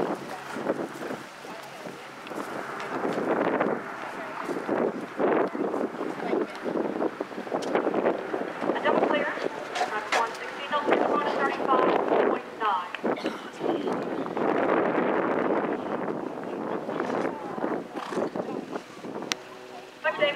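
Wind buffeting the microphone in uneven gusts, with faint talking underneath.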